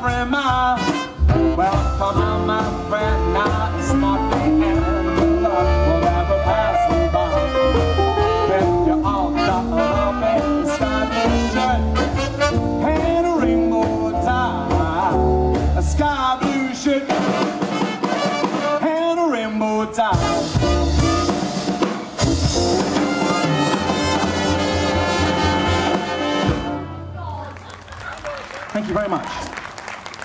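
Swing band playing an instrumental passage, trumpet lead over piano, double bass and drums. The low end drops away for a few seconds past the middle, and the tune ends near the close.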